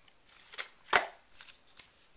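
Paper instruction leaflets and cardboard packaging handled by hand: light paper rustles and a few small clicks, with one sharp snap about a second in.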